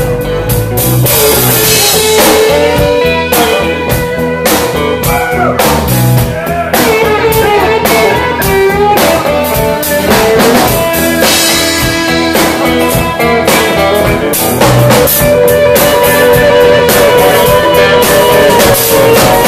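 Live rock band playing an instrumental passage: an electric guitar plays a lead line full of bent notes over a drum kit.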